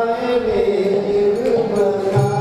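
Devotional chant-style singing: a voice holds long notes that bend slowly in pitch, over steady held accompaniment tones.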